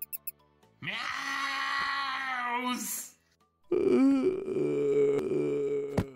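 A man screams in fright for about two seconds, his voice shooting up at the end, then, after a short pause, lets out a second long wailing cry. A few short, high mouse squeaks come at the very start.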